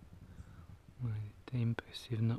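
About a second of faint hiss, then a man's soft, low voice murmuring a few short syllables, close to a whisper, with a small click near the end.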